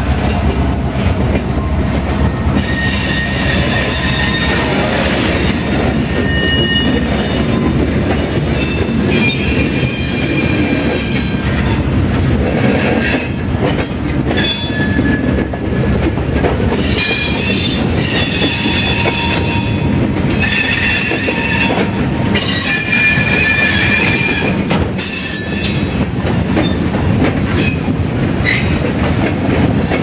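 Freight cars rolling slowly past behind a Norfolk Southern GP38-2 switcher, over a steady low rumble. Their steel wheels squeal on and off against the rail many times.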